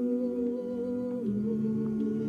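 Slow, meditative Taizé chant: several sustained notes held together as a chord, with the lower notes stepping down a little over a second in.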